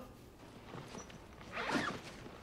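A quiet pause, then a brief rustling scrape about one and a half seconds in.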